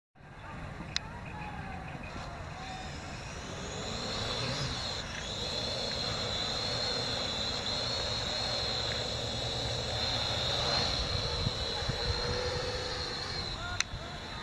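Parrot AR.Drone quadcopter's four electric rotors whining steadily at a high, even pitch as it hovers and climbs, a little louder from about four seconds in. A sharp click comes about a second in and another near the end.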